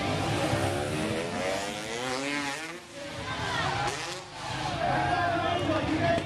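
Freestyle motocross bike engine revving, its pitch climbing for about three seconds before it cuts off, then rising and falling once more about a second later.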